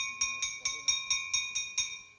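A bell-like metal tone struck rapidly and evenly, about four to five strikes a second, ringing on between strikes and stopping after about two seconds.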